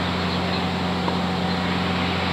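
A steady, unchanging low mechanical hum with an even hiss over it, from a running motor or machine.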